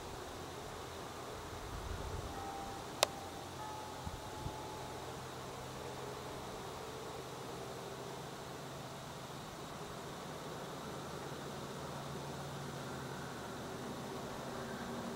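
Quiet outdoor ambience: a steady hiss with a faint low hum, broken by a single sharp click about three seconds in and a few short faint tones around it.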